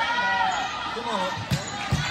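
Volleyball rally on an indoor court: two sharp hits of the ball close together near the end, over players' voices calling on court.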